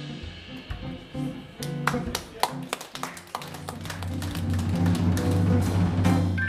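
Live jazz band playing a soft passage: electric bass guitar notes with a run of light, sharp taps on the drum kit in the middle.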